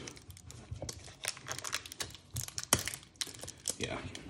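Irregular clicks and crinkles of a thin plastic deli-cup lid being pressed down by hand, with its shipping tape being handled.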